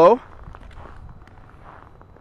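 Faint footsteps on snow, a soft irregular crunching, after a man's last word ends at the very start.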